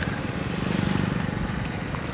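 Yamaha RX135 two-stroke single-cylinder engine running steadily while the motorcycle is ridden, with wind rushing over the microphone. The engine note swells a little about half a second in, then eases back.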